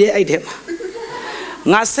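A man speaking, with chuckling in the quieter stretch between his words.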